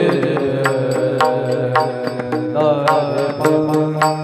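Devotional kirtan music: small hand cymbals (taal) struck in a steady beat, about two clashes a second, over sustained held sung and instrumental tones.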